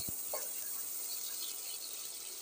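Sliced onions and green chillies frying in oil in an aluminium pressure cooker: a steady, even sizzle.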